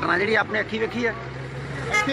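A vehicle engine running with a low, steady drone under a man's talking, cutting off near the end.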